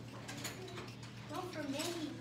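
Black Crayola felt-tip marker drawing on paper, in a series of short quick strokes that scratch across the sheet.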